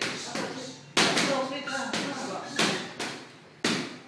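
Boxing gloves smacking against an opponent's gloves, arms and headgear in sparring: a series of about six sharp slaps, the loudest about a second in and near the end, each with a short room echo.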